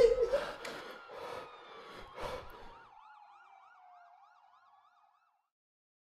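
A siren wailing quickly up and down, about four times a second, with a second tone sliding down beneath it, fading away by about five seconds in. Before it come a few sharp hits, and a loud pitched tail at the very start.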